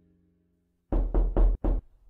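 After silence, four quick knocks in a row about a second in, spaced roughly a quarter-second apart.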